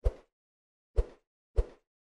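Three short pop sound effects: a sharp one right at the start, then two softer, thuddier pops about a second and a second and a half in. These are the click-pops of an on-screen animation.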